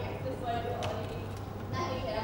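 A person speaking faintly, off-microphone, over a steady low electrical hum, with a single sharp click about a second in.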